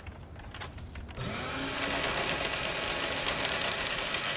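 Electric office paper shredder starting up about a second in and running steadily as a drawing is fed into it.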